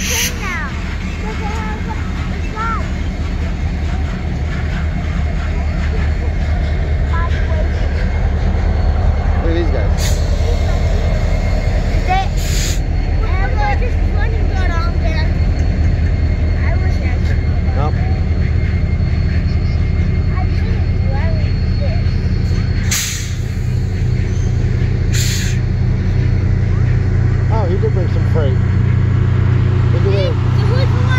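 Union Pacific passenger cars of the Big Boy 4014 train rolling past close by: a steady low rumble of wheels on rail with a thin squeal, and a few sharp knocks about ten, twelve, twenty-three and twenty-five seconds in.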